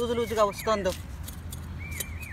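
A small metal hand hoe chopping and scraping into soft garden soil, a run of short scratchy strikes. A woman's voice speaks briefly over the first second.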